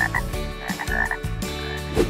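Frog croaking: a few short, high calls in quick succession.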